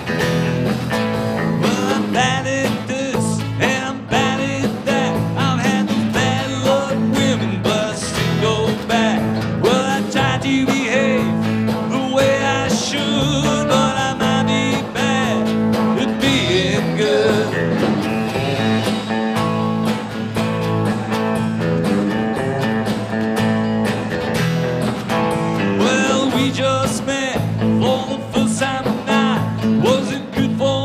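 Live country-rock band playing: electric guitar, electric bass and drum kit, with a male lead vocal singing over them.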